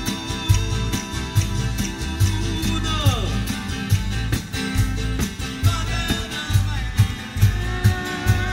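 Italian folk band playing live: strummed acoustic guitars over a steady drum beat, with a sung line and one falling swoop in pitch about three seconds in.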